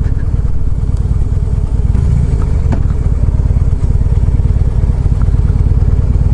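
2015 Harley-Davidson Breakout's 1690 cc air-cooled V-twin running steadily under way, with an even, rapid beat of firing pulses.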